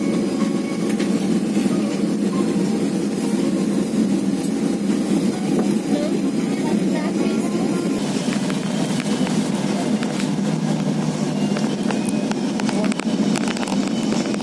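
Airliner cabin noise as the plane rolls along the runway: a steady low drone of engines and wheels. About eight seconds in it is joined by a brighter rattle with many small clicks and knocks.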